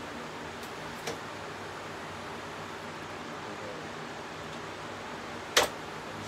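Hercules 12-inch miter saw's miter table being swung to its detent stops, the saw not running: a faint click about a second in, then a sharp click near the end as it lands in a stop.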